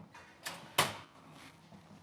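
Metal kitchen clatter as a rimmed baking sheet with a wire rack is taken out of a wall oven: two sharp knocks about a third of a second apart, the second the louder, then a few lighter clinks.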